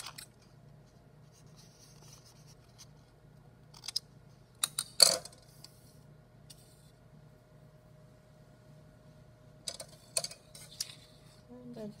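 Scissors snipping construction paper in a few sharp clicks, the loudest about five seconds in, over a low room hum. A quieter cluster of paper handling and taps comes around ten seconds in.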